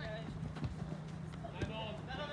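Soccer players shouting calls to each other on the pitch, with a few short knocks of boots striking the ball as it is dribbled.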